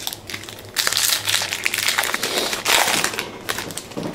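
Wrapper of a 2011 Topps Gridiron Legends trading-card pack crinkling as it is handled and opened by hand, an irregular crackle starting about a second in and stopping shortly before the end.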